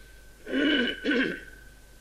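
A man clearing his throat in a short two-part rasp about half a second in, in a pause between phrases of his talk.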